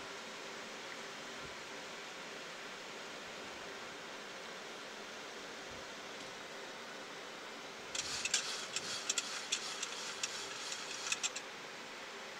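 Steady, even hiss of airflow and air-conditioning on a Boeing 737NG flight deck on final approach. From about eight to eleven seconds in, a run of soft rustles and small clicks sounds over it.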